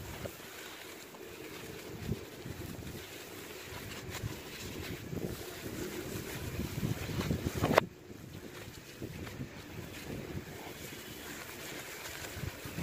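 Gloved hands crumbling and rubbing powdery charcoal and small lumps on a hard floor: an irregular, crumbly rustle, building in the middle, with one sharp knock about eight seconds in, after which it goes quieter.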